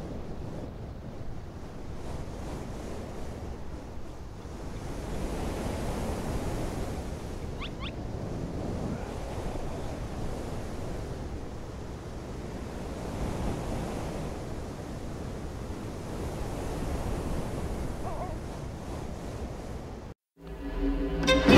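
Wind buffeting the microphone over the wash of surf on a tidal shore, a steady rushing noise that swells and eases in slow gusts. A brief faint high chirp comes about eight seconds in.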